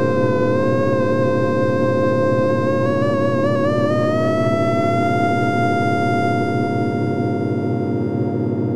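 Synthesizer music from the DinIsNoise software synth: a single lead tone wavers slightly, then glides smoothly upward about halfway through and holds the new pitch, over a steady drone of lower tones.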